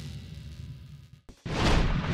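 Music fading out, a moment of silence, then a whooshing sound effect with a deep rumble swells in about one and a half seconds in, the first of a series of swells.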